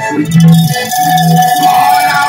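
Backing music with steady, repeated bass notes and a long held higher note from about a second in.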